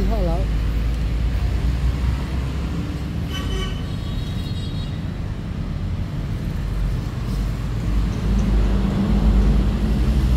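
Steady low engine rumble, with a brief higher-pitched tone about three seconds in.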